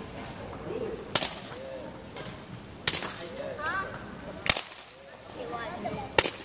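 Badminton racket striking the shuttle three times, each a sharp crack about a second and a half apart, in a reverberant sports hall.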